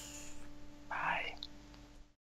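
A short whispered, breathy sound from a person about a second in, over a faint steady hum.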